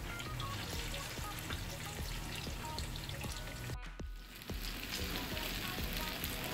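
Ripe plantain pieces frying in hot oil in a pan: a steady sizzle with fine crackling. The sound drops out briefly about two-thirds of the way through, then the sizzle carries on.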